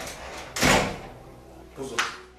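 A room door is pushed open and bangs once, a little over half a second in, after a smaller knock at the start.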